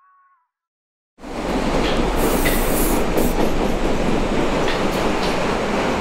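Loud, dense rumbling noise with a few faint clicks, starting suddenly about a second in and cutting off suddenly at the end.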